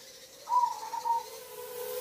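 A faint bird call, a hoot-like coo starting about half a second in, its lower note trailing on to the end.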